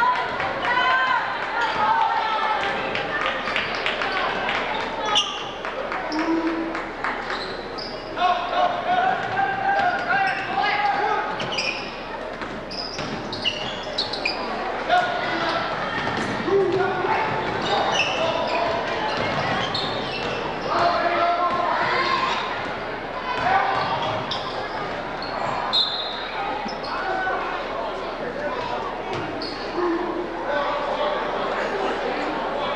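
Basketball bouncing on a hardwood gym floor during play, with short high squeaks and the voices of people talking, all echoing in a large gymnasium.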